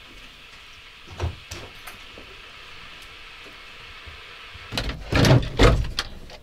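Wooden garden shed door being pulled open: a quick cluster of loud knocks and scrapes near the end. A single softer knock comes about a second in.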